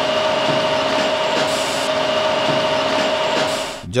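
Steady tea-factory machinery noise with a constant hum, cutting off suddenly near the end.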